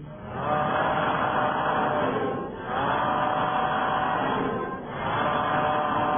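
Many voices calling out together three times, each call drawn out for about two seconds with short dips between.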